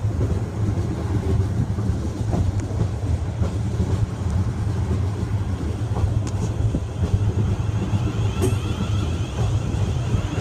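Siemens Desiro Class 450 electric multiple unit pulling out and moving past at low speed, with a steady low rumble of wheels and running gear and a few faint clicks. A wavering higher whine comes in near the end.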